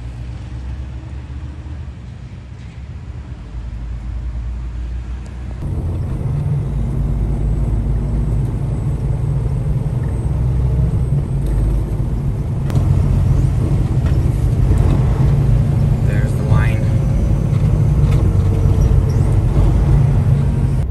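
Semi truck's diesel engine heard from inside the cab while driving: a steady low drone, quieter at first and louder from about five seconds in.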